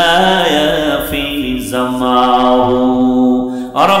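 A man's voice chanting an Islamic recitation in a drawn-out melodic style into a microphone, holding long sustained notes. There is a short break near the end before the next phrase begins.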